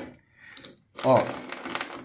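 Mostly a man speaking briefly in the second half; about half a second in there is a faint short scrape of a screwdriver tip pressing a sandpaper strip into the groove of a nylon sanding wheel.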